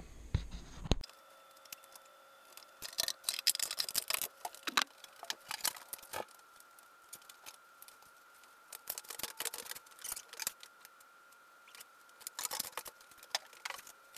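Irregular bursts of sharp clicks and scrapes from a stone slab being strapped and shifted on a wooden board, with quiet gaps between.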